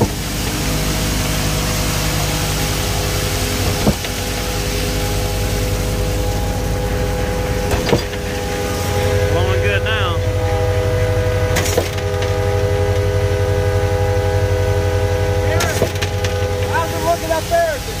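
Concrete pump truck running under load as lightweight concrete is fed into its hopper: a steady engine and hydraulic hum with a sharp knock about every four seconds, typical of the pump changing stroke. Short squeaks come in about ten seconds in and again near the end.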